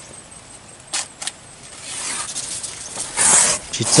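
Large fresh banana leaves being handled and cut, rustling and crackling: two short sharp snaps about a second in, then a louder rustle near the end.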